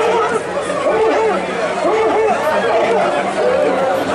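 Many voices calling out over one another in rising-and-falling cries, shouts from the people around a tbourida charge of galloping horsemen.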